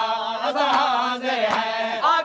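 A noha, a Shia mourning lament, sung in Punjabi by a male reciter in a long, wavering held line. The mourners' chest-beating (matam) slaps in time with it, about once every 0.8 seconds.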